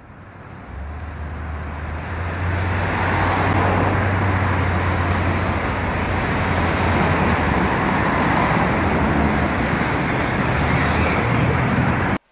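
City street ambience of steady road traffic, with a low engine-like hum underneath, fading in over the first three seconds and then holding steady.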